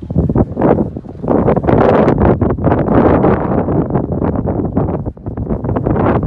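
Wind buffeting the phone's microphone, a loud, rough rumble and crackle that builds about a second in and carries on in gusts.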